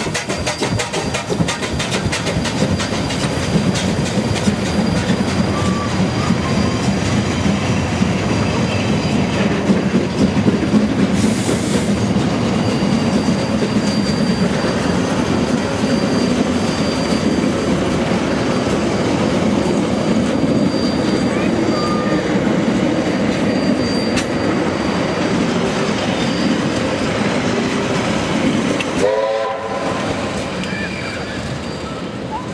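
A train hauled by the NZR Ka class 4-8-4 steam locomotive No. 942 rolling past, its wheels clattering over the rail joints in a steady, loud rush. The sound cuts off suddenly near the end.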